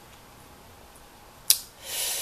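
Quiet room tone, then a single sharp mouth click about one and a half seconds in, followed by a breath drawn in before speaking.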